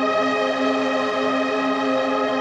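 Sustained drone of heavily processed bowed cymbal samples, run through modular and granular synthesizers and tape machines. Many steady tones are held together at an even, fairly loud level with a slight waver.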